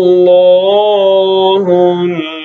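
A man's voice chanting Quran recitation (tilawat), holding one long melodic note with a slowly wavering pitch that ends about a second and a half in.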